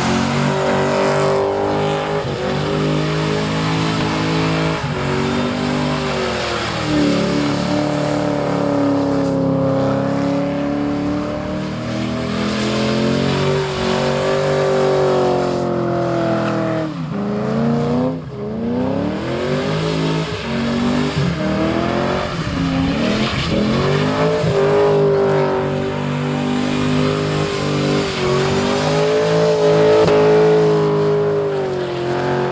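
Holden VY Commodore wagon's LS1 V8 held at high revs through a burnout, with the rear wheels spinning. The revs drop sharply and climb straight back about halfway through, and again a few seconds later.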